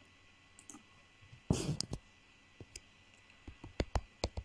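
A short spoken "bye", then a run of about half a dozen sharp clicks of a computer mouse in the second half.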